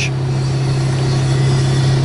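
Excavator's diesel engine idling, heard from inside its cab: a steady low hum that does not change.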